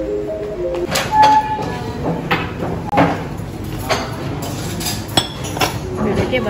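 A few notes of a melodic tune, then irregular clinks of cutlery and dishes, one ringing briefly.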